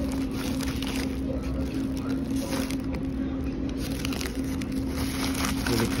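Foil and paper food wrapping crinkling and rustling in short bursts as it is handled and opened, over the steady low hum of a car's cabin.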